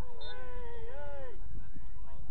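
A man's drawn-out wordless yell on the pitch, lasting about a second and a half, wavering and sliding down in pitch before cutting off.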